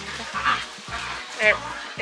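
Background music with a steady low line, and a single short spoken word near the end.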